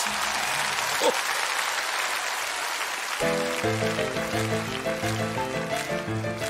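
A wash of hissing noise, then about three seconds in an instrumental music intro starts, with chords repeating in a steady rhythm.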